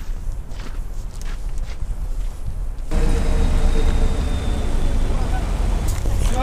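Winter city street noise with traffic, quieter at first with a few light steps, then abruptly louder and steadier from about three seconds in, heavy in the low end.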